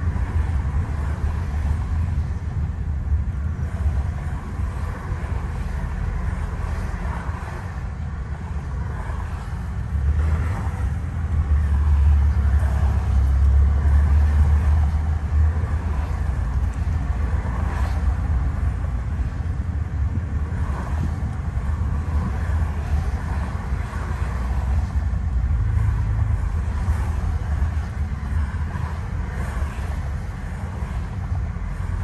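Steady low rumble of a car travelling at highway speed, heard from inside the cabin. It grows louder for several seconds about a third of the way in.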